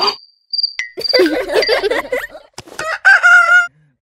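Cartoon vocal sound effects for an animated pig: a thin, high, chirping whistle tone broken into short pieces in the first second, then a run of squeaky, bending voice sounds, and a held squeal near the end.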